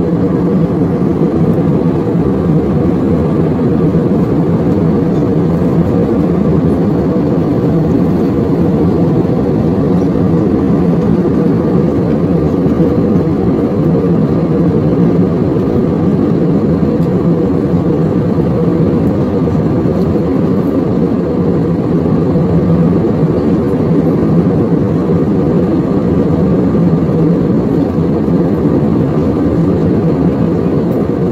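Steady cabin noise of a jet airliner in flight, the engines and airflow heard from a window seat over the wing: an even, low-pitched roar with a faint steady hum and no change throughout.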